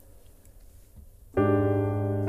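A quiet pause, then about a second and a half in a sustained piano chord comes in suddenly and is held: the opening of a song's accompaniment.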